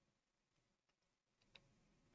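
Near silence: room tone, with a couple of faint clicks about a second and a half in.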